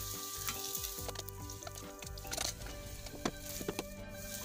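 Oil sizzling in a nonstick frying pan around batter-coated slices of kue keranjang (sweet glutinous rice cake). Short clicks and scrapes come from a plastic spatula against the pan as the pieces are moved.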